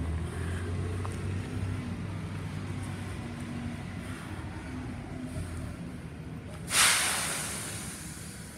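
Diesel engine of a Mack LEU rear-loader garbage truck running as the truck moves up the street, then near the end a sudden loud hiss of its air brakes, trailing off over about a second.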